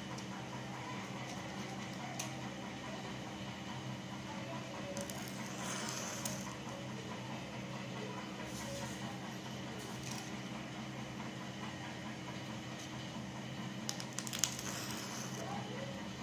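A matchstick struck on a matchbox and catching light: a short scratchy burst with one sharp crack about a second and a half before the end. Under it is a steady low background hum.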